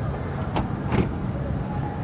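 Steady low rumble of motor vehicles, with two short sharp clicks about half a second apart near the middle.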